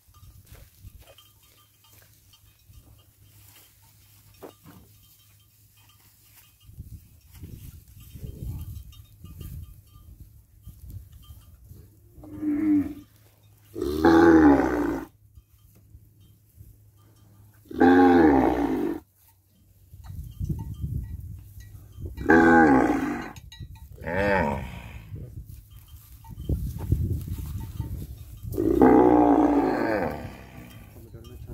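Cattle mooing: about six loud, drawn-out calls of about a second each, coming at uneven gaps through the second half, with a low rumble between them.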